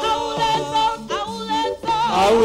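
Gospel praise singing, the voice holding long notes that waver in pitch.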